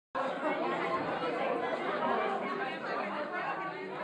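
Audience chatter: many people talking at once in a hall, a steady babble with no single voice standing out.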